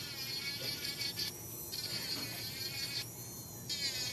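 Electric nail drill (e-file) running with a diamond cuticle bit, a steady high-pitched whine as it is worked along the cuticle edge of a gel nail. The upper part of the whine drops out twice for a moment.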